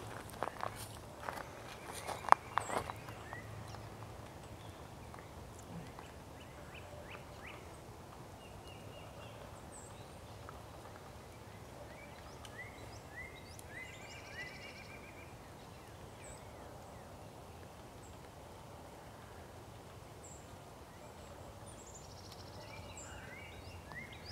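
Quiet woodland background with faint small-bird chirps, short quick notes scattered through the middle and again near the end. A few sharp knocks in the first three seconds.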